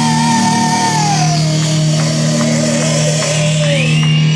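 Rock band playing live: electric guitar and drums with a steady low note underneath and one long high held note that slides down in pitch and wavers before stopping near the end.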